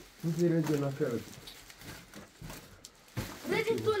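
Mostly speech: a voice talking, then a quieter pause with faint rustling and handling of plastic shopping bags, then talking again near the end.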